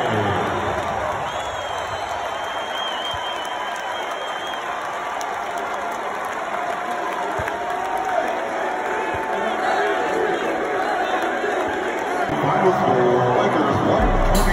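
Arena crowd cheering and chattering, a wash of many overlapping voices. A long, high, wavering call sounds above it from about a second in.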